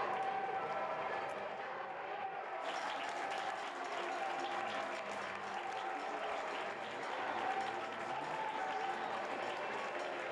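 Football stadium crowd cheering and applauding a goal. The noise swells suddenly about two and a half seconds in and stays up.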